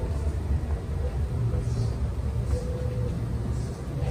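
A steady low rumbling drone, with a faint hum that comes and goes higher up.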